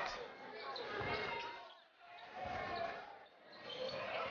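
A basketball dribbled on a hardwood court, a few bounces, over faint arena crowd noise and voices.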